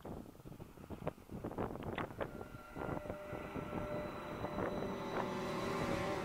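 Irregular footsteps and scuffs on a gravel path, with held notes of music swelling in over the second half.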